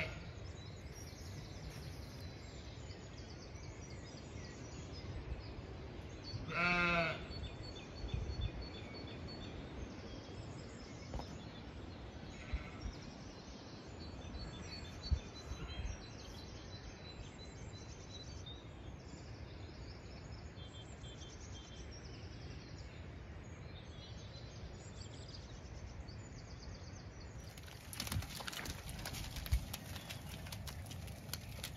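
A Zwartbles sheep bleats once, loudly, about seven seconds in, over a low steady rumble of wind and faint dawn-chorus birdsong of short high repeated chirps. Near the end comes a burst of clattering steps and movement of sheep on muddy ground.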